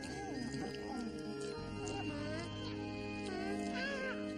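Soft background music with warbling, squeaky animal-like calls from two small furry creatures.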